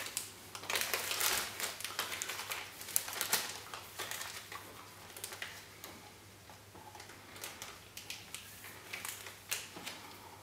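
A plastic ziplock bag crinkling, with irregular light clicks and taps from a tin can being handled, as condensed milk is poured from the can into the bag. The clicks are denser in the first half and thin out later.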